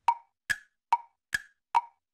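Tick-tock sound effect of woodblock-like clicks, about two and a half a second, alternating high and low: a thinking timer counting off the time to guess.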